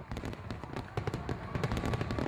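Fireworks going off: a continuous crackle of many small, sharp pops.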